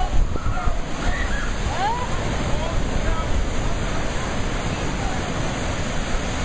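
Ocean surf surging over a rock ledge and pouring into a sea pool, a steady rushing wash of breaking water.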